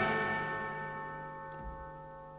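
Music from an orchestral film score. After the choir and orchestra break off, a bell-like chord keeps ringing and slowly fades away. A faint soft thud comes near the end.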